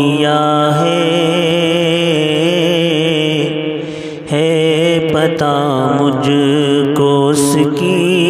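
Devotional vocal music of an Urdu munajat: a man's voice singing long, wavering, wordless notes over a steady drone. It dips briefly about four seconds in, then resumes.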